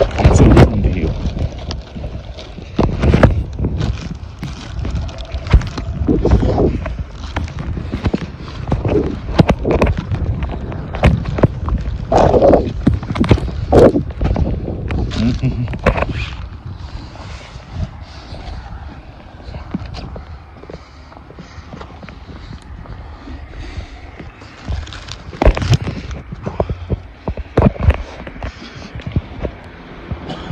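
Wind buffeting a handheld phone's microphone, with repeated knocks and rubbing from the phone being handled while walking. The knocks come thick in the first half, ease off in the middle, and return briefly near the end.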